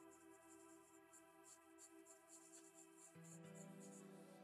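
Faber-Castell Polychromos coloured pencil scratching on paper in short, quick strokes. Faint background music with held chords runs beneath, changing chord about three seconds in.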